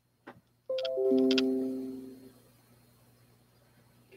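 A short chime: several ringing notes struck one after another in quick succession at different pitches, mostly stepping downward, each fading out over about a second and a half.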